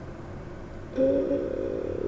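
A woman's drawn-out hesitation sound, "uhh", held at one pitch for about a second, starting about halfway through after a second of low room noise.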